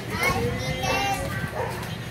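A flock of budgerigars chattering, a run of short chirps and gliding, warbling whistles that is busiest about a second in.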